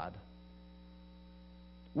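Steady electrical mains hum, a low buzz with a stack of evenly spaced overtones, heard in a pause between spoken sentences.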